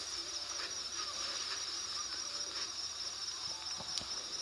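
Steady, high-pitched chorus of crickets chirping.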